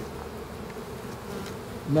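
Honeybees buzzing steadily around an open hive, the colony just smoked to calm it.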